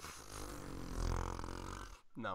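A faint, drawn-out, low non-word sound from a person's voice, such as a groan or a long breath into the microphone, lasting nearly two seconds.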